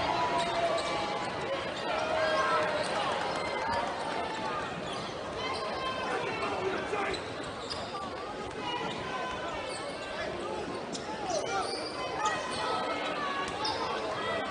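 A basketball bouncing on a hardwood court during play, over the chatter of spectators in a large gym.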